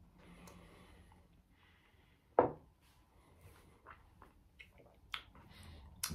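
A person sipping rum from a tasting glass, then tasting it: a faint sip in the first second, one short louder mouth sound about two and a half seconds in, and a few small lip and tongue clicks near the end.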